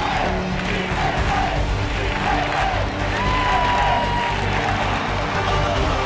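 Background music mixed with a football stadium crowd cheering and shouting.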